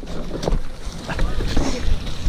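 Mountain bike rolling down a trail covered in dry leaves: steady wind rumble on the camera's microphone over tyre noise through the leaves and the bike rattling, with a sharp knock about a quarter of the way in.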